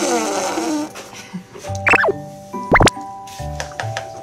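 A baby blowing a wet raspberry through pursed lips, a sputtering 'buu' that falls in pitch and lasts about a second, over cheerful background music. Two quick whistle-like glides, up then down, follow near the middle.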